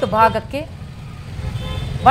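Street traffic noise: a steady low rumble of motorbikes and cars, with a faint horn sounding near the end. A narrator's voice is heard briefly at the start.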